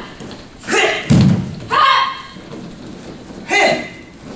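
A body hits a padded mat with a heavy thud about a second in, the breakfall from a jujutsu throw. Around it come short, sharp voice bursts, typical of the practitioners' kiai shouts.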